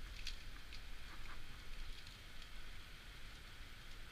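Plastic Pyraminx being handled and turned: a few light clicks in the first second and a half, then a couple of fainter ones around two seconds in.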